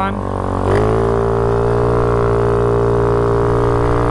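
Small motorbike engine pulling away from a stop: its pitch rises quickly about a second in, then settles into a steady drone at cruising speed.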